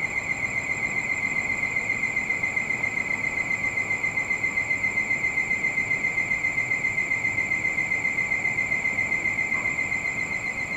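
Insects trilling in a steady high-pitched chorus that pulses rapidly and evenly, several times a second.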